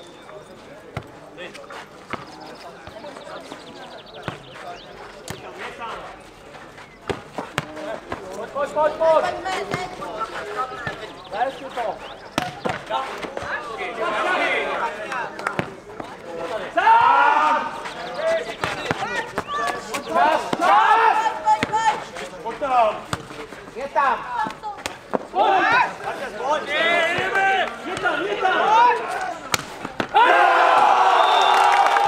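A nohejbal (football tennis) ball being kicked and bouncing on a clay court in a rally, heard as short sharp impacts, with players shouting and calling to each other, louder and more often from about a third of the way in.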